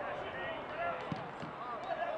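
Footballers shouting to each other on the pitch, with two dull thuds of the football being struck a little over a second in.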